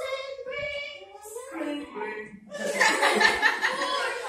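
Voices holding drawn-out pitched notes, then about two and a half seconds in a burst of laughter and a loud 'Woo!' from the crowd.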